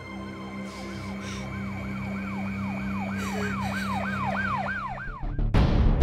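An emergency-vehicle siren yelping in fast sweeps, about three rises and falls a second, growing louder over a low steady musical drone. About five seconds in it cuts off and a loud burst of music takes over.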